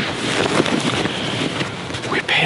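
Wind buffeting the camera's microphone, a steady noise with no other distinct sound.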